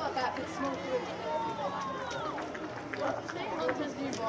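Several voices of spectators and players shouting and calling out together during play, overlapping with no single speaker standing out.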